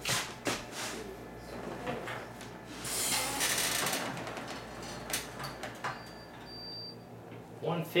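Handling noise from a patient lift: sharp clicks and clinks of its chains and sling hooks, and a rustle of fabric about three seconds in. A short high beep follows about six seconds in.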